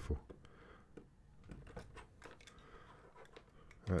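Faint, irregular clicks and short scrapes of a knife blade shaving small ridges off a model kit's door-panel part.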